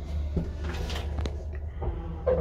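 Mid-1960s Paravia traction elevator car: a few sharp clicks and knocks, one about a third of a second in and two more around a second in, over a steady low hum.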